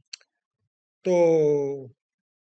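A man's voice holding one long, drawn-out syllable ("Το...") as a hesitation, with a faint short click just before it at the very start.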